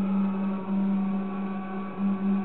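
A steady low drone, one held tone with fainter higher tones over it, pulsing slightly in loudness.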